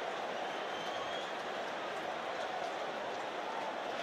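Football stadium crowd noise: the steady, even hum of a large crowd, with no single voice standing out.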